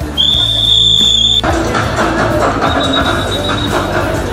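One long, steady whistle blast lasting about a second, followed by background music with a steady beat.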